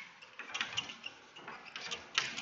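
Chalk writing on a chalkboard: a series of short, faint scratchy strokes.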